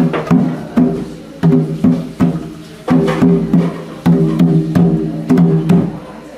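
Hand drumming on a barrel-shaped wooden hand drum: uneven strokes, two to three a second, each with a short ringing tone.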